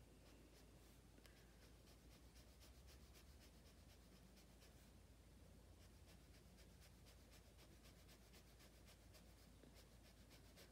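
Faint scratching of a brush pen tip on sketchbook paper, drawing many short hatching strokes in quick succession.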